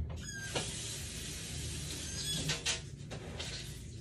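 Kitchen sink tap running for about two seconds, with a short high squeak near where the flow starts and again where it stops, and a couple of clinks of dishes in the sink.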